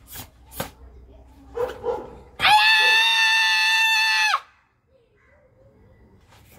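Two sharp snaps of a karate gi on fast strikes in the first second, then a girl's loud, drawn-out kiai shout held at one pitch for about two seconds and dropping at the end.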